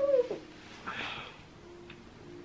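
A small Yorkshire terrier gives one short, high whine right at the start, followed about a second in by a soft breathy noise.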